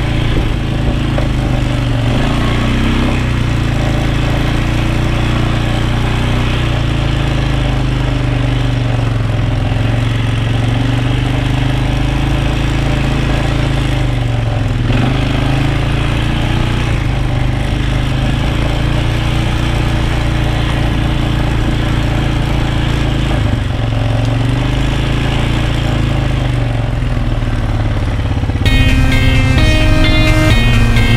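An ATV (four-wheeler) engine running as the machine rides along a grassy trail, its pitch rising and falling a little with the throttle. Music with plucked notes takes over near the end.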